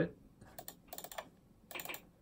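Faint rapid clicking of computer input buttons in three short runs.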